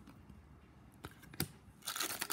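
Faint handling of trading cards: two light clicks about a second in, then louder rustling of cards starting near the end.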